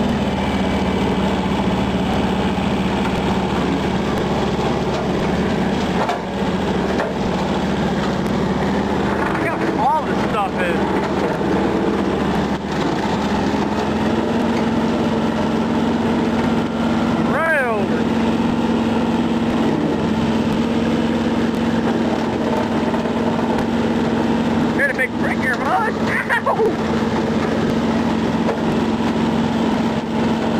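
John Deere 650 compact diesel tractor running steadily under load while pulling a bush hog rotary cutter through heavy overgrowth. A few brief high squeals rise and fall over the engine, around ten, eighteen and twenty-five seconds in.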